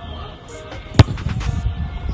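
A football kicked hard once: a single sharp thud about halfway through, over background music.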